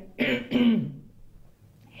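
An elderly woman clearing her throat: one short rough, rasping clear in the first second, then a quieter rasp near the end.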